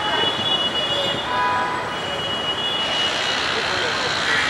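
Street background noise: a steady traffic hum with indistinct voices of people gathered close by, and a few faint, thin, high tones held for about a second each.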